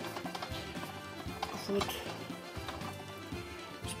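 Wooden spatula clicking and scraping against a frying pan while stirring pieces of fried pork and vegetables: a run of small irregular knocks, over background music.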